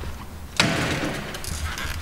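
A sudden rustling scrape about half a second in, dying away over about a second, over a low rumble of a hand-held camera being moved about close to a car door's bare inner shell.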